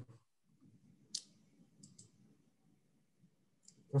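Four faint, sharp clicks: one about a second in, two close together near the middle and one near the end, over a faint low hum.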